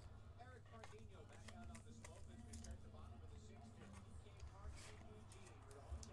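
Near silence: a steady low hum under faint, indistinct voice-like sound, with a few soft slides and rustles of trading cards being sorted by hand.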